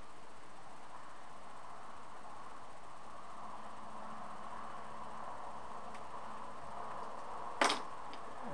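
Steady background hiss with a faint whine, and one sharp click near the end.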